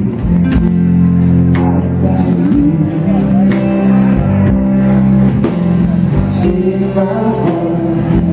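Live rock band playing: strummed acoustic-electric guitar over electric bass and drums, with sung vocals.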